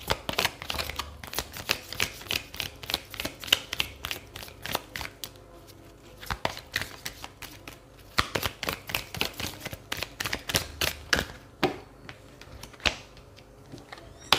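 A deck of round oracle cards being shuffled by hand: quick runs of light clicks and snaps as the cards slap together, broken by short pauses.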